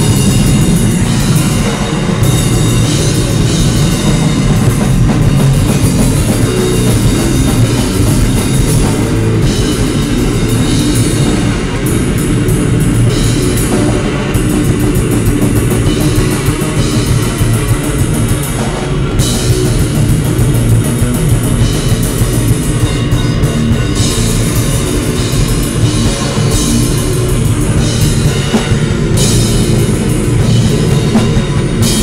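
A live rock band of drum kit and electric guitar playing loudly and without a break, with no bass guitar in the line-up.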